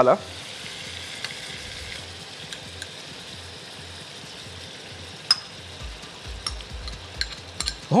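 Chicken livers sizzling steadily in a hot frying pan as caramelized onions are added, the sizzle easing slightly after the first couple of seconds, with scattered sharp clicks in the second half.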